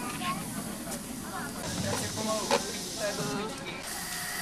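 Small live-steam locomotive letting off steam, a hiss that starts about a second and a half in and dies away near the end, with one sharp click about midway. Voices chatter in the background.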